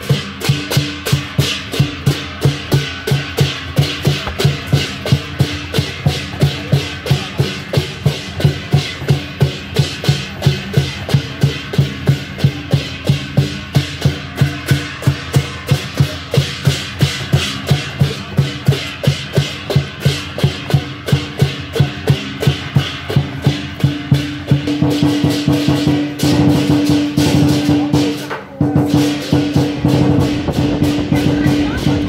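Lion dance percussion: a Chinese drum with cymbals and gong beating a steady, loud rhythm of about three strikes a second. In the last few seconds the strikes run together into a denser, continuous ringing clash.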